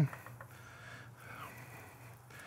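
Faint hiss of a cream pan sauce simmering in a stainless steel skillet, over a steady low hum.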